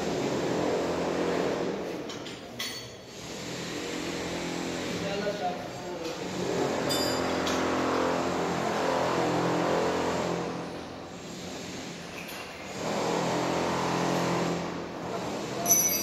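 Voices and a steady machine hum, with a few short metallic clinks of a hand tool against the steel machine frame, one about a third of the way in and a louder one at the very end.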